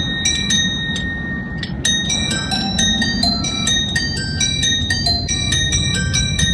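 Film soundtrack music: a quick, tinkling melody of high, bell-like struck notes, several a second, over a steady low rumble.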